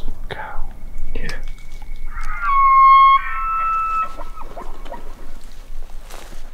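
A bull elk bugling: one long, high, whistling call of about two seconds, starting about two seconds in, that shifts in pitch partway through. Hunters whisper around it.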